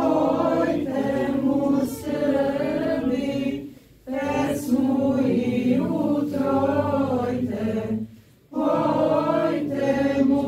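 Unaccompanied group of voices singing Orthodox liturgical chant during a church service, in long sung phrases with short breaks about four seconds in and again about eight seconds in.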